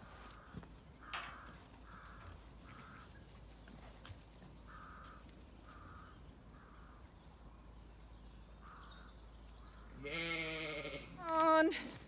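Zwartbles sheep bleating: two loud bleats near the end, the second rising in pitch.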